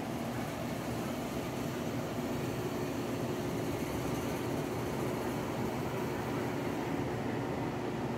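Steady low mechanical hum that does not change, with a few faint steady tones in it.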